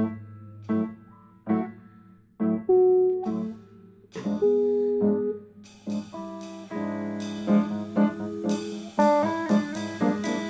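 Improvised jazz on piano and electric guitar: sparse single notes and short phrases with gaps between them, growing busier about halfway through as drums with cymbals join in.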